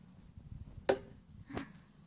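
Two short, sharp clicks or knocks about two-thirds of a second apart, over faint background noise.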